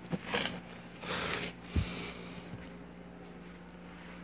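Soft handling noises: a brief rustle near the start, another about a second in, and a low thump just under two seconds in, over a steady low hum.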